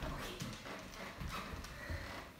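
A large dog's claws clicking on a hardwood floor as it walks and turns, a few irregular taps.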